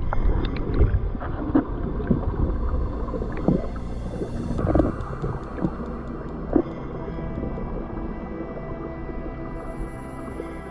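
Underwater sound picked up by a GoPro: a low rumble and a steady hum with a few held tones, broken by short squeaks and knocks that crowd the first several seconds and thin out toward the end.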